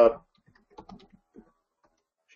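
Faint computer keyboard typing: a handful of short key clicks over about a second as a short terminal command is typed and entered.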